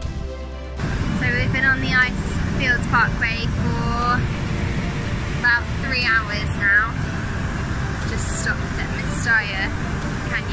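Brief music at the start, then a woman talking over a steady low rumble, like road or wind noise.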